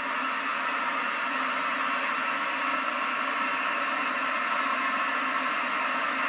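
Steady, even hiss of a gas burner running, with a faint low hum underneath.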